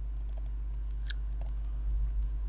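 Light clicks of a computer mouse, two faint ones a little past the middle, over a steady low electrical hum.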